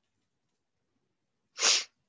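A single short sneeze near the end.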